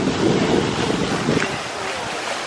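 Wind buffeting the camera's microphone: an uneven, gusting low rumble that eases slightly near the end.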